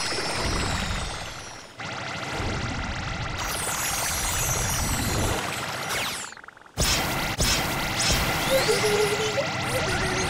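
Cartoon background music with magical ice-beam sound effects: shimmering, whooshing sparkle as a spray of ice freezes the sea. The sound drops away briefly about six and a half seconds in, then comes back suddenly and loud.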